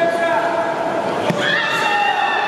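A sharp slap of a strike landing just over a second in, followed at once by a karateka's high-pitched kiai shout that rises and then holds. Both sound over a steady hubbub of voices in the hall.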